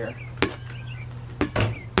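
Rubber playground ball bouncing on a concrete driveway: sharp slaps about a second apart.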